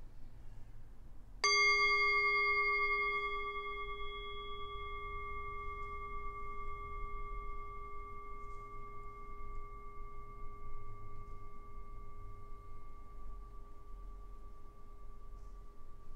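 A metal singing bowl struck once, about a second and a half in, ringing with several clear tones. The higher overtones die away within a few seconds, while the low tone rings on and slowly fades.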